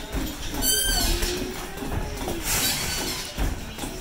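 Boxers sparring in a gym ring: footwork on the canvas with a low thud near the end and a brief high squeak about a second in, over background music.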